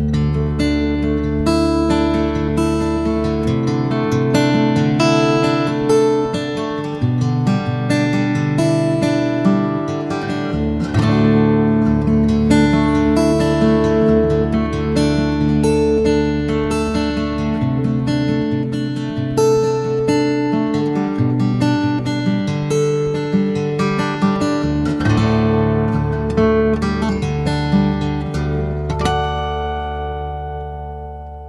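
Orangewood Echo dreadnought acoustic guitar played fingerstyle: a run of plucked melody notes over ringing bass notes, ending on a chord left to ring and fade. It is heard in stereo, with the guitar's built-in condenser mic on the left channel and an external microphone on the right.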